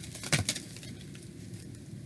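Two or three brief taps and clicks about a third of a second in, over a faint low room hum: hands handling the tarot deck at the table.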